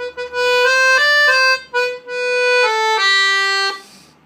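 Delicia piano accordion playing a short melody of about eight notes on its single-voice register: one reed per note, giving a dry tone without the tremolo of the two- and three-reed settings. The phrase has a brief break in the middle and stops shortly before the end.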